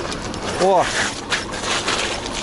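A man's short exclamation "Oh!" over the rolling noise of a homemade electric cargo bicycle on a rough road, with a few faint knocks.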